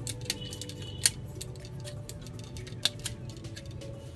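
Hard plastic parts of a transforming action figure being folded and snapped into place: a few sharp clicks, the loudest about a second in and another near three seconds.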